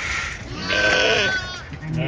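Sheep bleating: one long, wavering bleat of about a second, with another bleat starting near the end.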